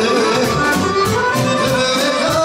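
Live Serbian folk band playing, with accordion leading the melody over a steady drum beat.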